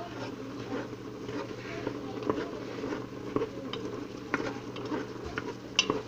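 Steamy pot of cauliflower soup cooking on the stove, giving a steady sizzle with many small scattered pops and crackles, while a utensil stirs in the pot.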